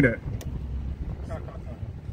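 Low, steady outdoor rumble on a handheld microphone, with one sharp click about half a second in and faint distant voices.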